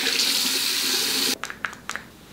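Water running from a tap in a steady rush, cutting off abruptly about a second and a half in, followed by a few small clicks.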